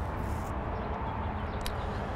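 Steady low rumbling background noise, with a faint click near the end.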